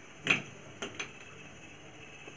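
Three short clicks or taps over low room noise: the first about a third of a second in, the other two close together near the one-second mark.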